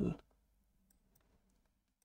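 A few faint computer keyboard key clicks over near silence, just after a man's voice trails off at the start.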